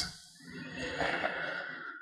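A man's long, breathy exhale close to the microphone. It starts about half a second in, lasts about a second and a half, and fades out.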